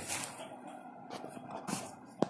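Small cardboard box being handled and turned over by hand: faint rubbing of fingers on cardboard with a few soft taps and knocks.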